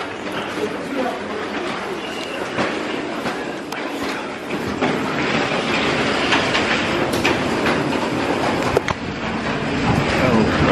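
Train running on the rails, a steady rumbling rush with scattered clicks that grows louder about halfway through.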